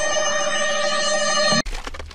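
A loud, steady ringing tone made of several fixed pitches, like a bell or ringer, that cuts off suddenly about one and a half seconds in; a low rumble follows.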